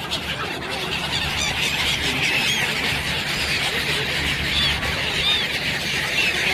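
A large mixed flock of waterbirds (swans, ducks and gulls) calling together: many short, high, arching calls overlapping in a dense chatter that thickens after about a second and a half.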